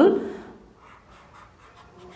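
A spoken word ends at the start, then faint scratchy stylus strokes on a drawing tablet as a shape is drawn into a diagram.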